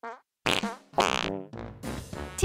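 Cartoon fart sound effects: a run of short toots, some falling in pitch, over a music sting.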